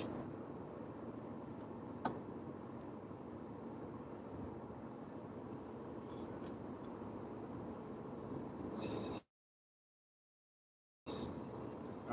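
Steady road and engine noise inside a car's cabin cruising at highway speed, with a single sharp click about two seconds in. Near the end the sound drops out entirely for about two seconds, then the cabin noise returns.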